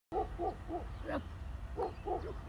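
Short hooting 'oh' calls, about five in two seconds, over a steady low rumble.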